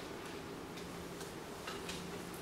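Quiet classroom room tone with a steady low hum and a few faint, scattered ticks.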